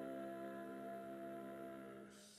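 Unaccompanied vocal quartet of soprano, countertenor, tenor and bass softly holding a sustained chord, which begins to fade near the end.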